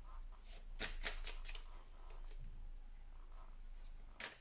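Tarot cards being handled: a few light clicks and rustles of card stock in the first second and a half, then fainter rustling.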